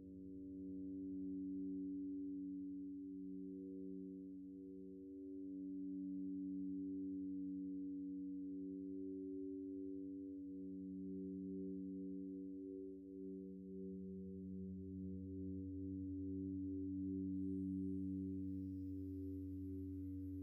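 Feedback drone from the Empress ZOIA Euroburo's Feedbacker patch, a reverb fed back into itself through a chain of bell filters, a ring modulator and other processing. Several low, steady sine-like tones sound together, some of them gently pulsing. The bass swells about two-thirds of the way through, and faint high tones come in near the end.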